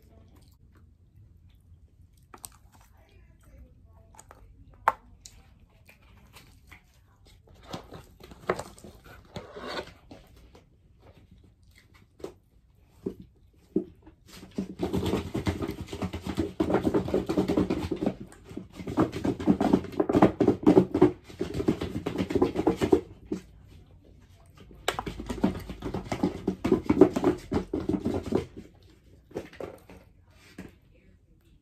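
Close-up eating sounds: chewing and mouth noises from eating sauced chicken wings, with scattered small clicks at first, then three long, loud stretches of dense chewing in the second half.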